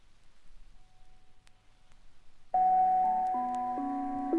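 A near-quiet gap with a few faint clicks, then about two and a half seconds in, jazz-rock music starts abruptly. It opens on held, layered chords of electric vibraphone that shift in steps.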